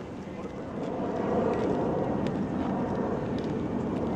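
A low, steady outdoor rumble that swells about a second in and holds, with faint murmuring voices under it.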